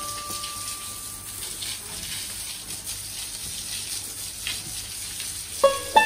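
Water from a hose spraying onto a cow and a wet concrete floor: a steady hiss and splatter. A held chime note fades out in the first second or so, and plucked-string music starts near the end, louder than the spray.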